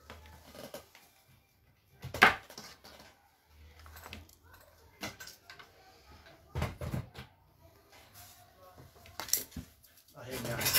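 Scattered knocks and clatter of small hard objects being handled and set down on a work table, the sharpest knock about two seconds in.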